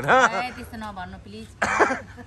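A woman's voice speaking, with a short noisy burst near the end, such as a throat clear or cough.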